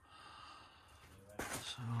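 A quiet pause of faint background hiss, then a man's audible breath drawn in about one and a half seconds in, just before he starts speaking again.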